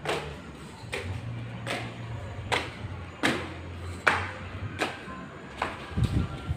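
Footsteps climbing the last steps of a concrete staircase and stepping onto a concrete landing, at a steady pace of about one step every 0.8 seconds, eight steps in all. A low hum runs underneath.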